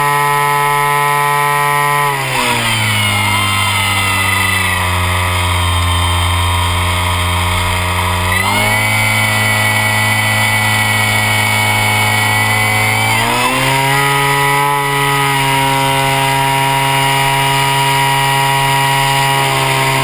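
RC model plane's motor and propeller running close by at changing throttle: the pitch drops about two seconds in, then rises again around eight seconds and once more around fourteen seconds.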